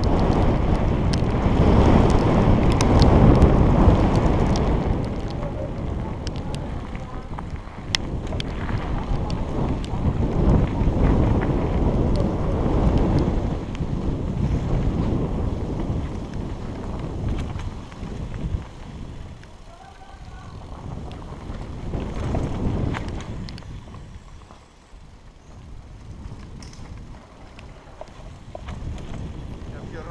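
Wind rushing over a helmet-mounted camera's microphone and tyre noise on a fast mountain-bike descent over pavement and then a dirt trail. It is loudest in the first few seconds and eases off later, with a quieter stretch about three quarters of the way through.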